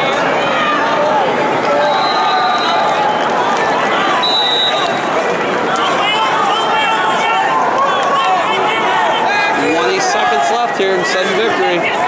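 Wrestling arena crowd shouting, many voices yelling over one another at a steady, loud level.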